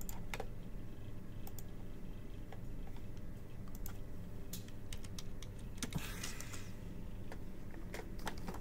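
Irregular keystrokes and clicks on a computer keyboard, with a steady low hum underneath.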